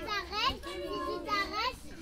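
Children's voices calling out an answer, high-pitched and spoken in a sing-song way.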